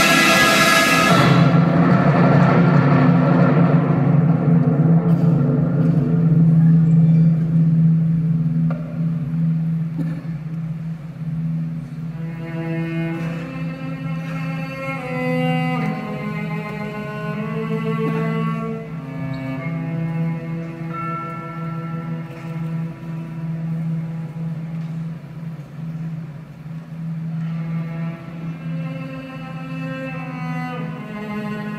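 Chinese traditional orchestra playing live. A loud full passage dies away in the first second or two. A long-held low note then sounds under a quieter melody that enters about twelve seconds in.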